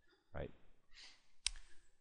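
A single sharp click about one and a half seconds in, following a short spoken "right?".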